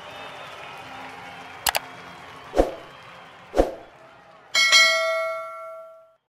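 End-card sound effects: a soft steady hiss, three short whoosh-pops about a second apart, then a loud bell chime that rings on and fades out.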